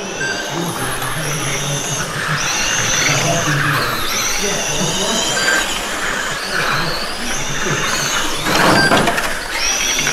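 Electric motors of 1/12-scale GT12 RC pan cars whining high, the pitch rising and falling again and again as the cars accelerate and brake around the track.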